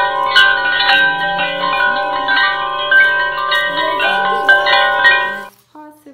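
A bright bell-like chiming melody, like a glockenspiel or music-box tune, playing loudly and then cutting off suddenly about five and a half seconds in.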